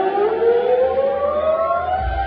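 A male singer's amplified voice holding one long note that slides slowly upward in pitch, heard through the PA at a live concert.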